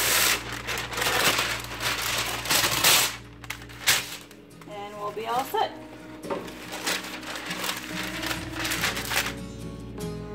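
Parchment paper pulled off the roll and torn free, a loud papery rustling for about three seconds ending in a sharp snap or two. After it, quieter background music and a voice.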